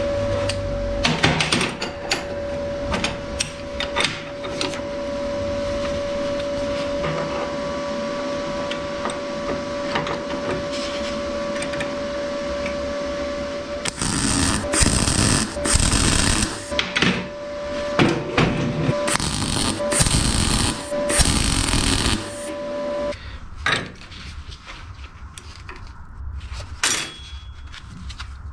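Stick (MMA) arc welding on steel flat bar: the arc runs steadily with a whine, then goes in short stop-start runs from about halfway and stops about four-fifths of the way in. Near the end, a scribe scratches on the steel.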